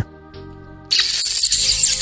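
A person sucking their teeth in contempt: one long hissing, squeaky suck beginning about a second in and falling in pitch as it ends, over soft background music.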